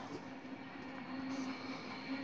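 Faint pen strokes scratching on paper as a line and an equals sign are written, over a steady hum.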